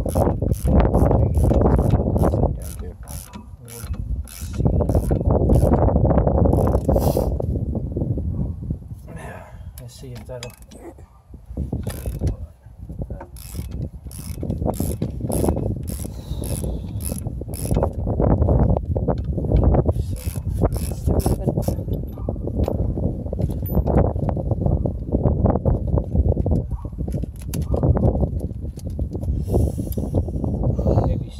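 Hand ratchet wrench clicking in quick runs as a 15/16-inch bolt on the front suspension is turned, over a heavy low rumble.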